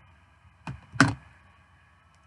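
Two short knocks close to the microphone, about a third of a second apart, the second louder.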